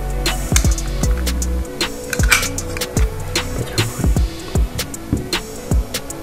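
Background music with a drum beat and a low bass line.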